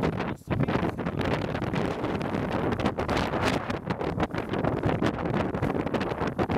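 Strong wind blowing across the camera microphone: a loud, uneven rush of noise, heaviest in the low end, rising and falling in quick gusts, with a brief lull about half a second in.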